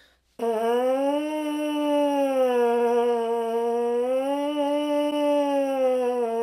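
A trombone mouthpiece buzzed on its own, without the instrument: one long buzzed note starting about half a second in, its pitch slowly rising and falling a little, as a lip-buzzing siren warm-up.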